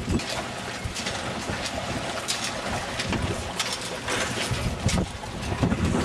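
Wind buffeting the microphone over a steady rush of wind and water, with scattered small ticks; the low rumble of the gusts comes and goes.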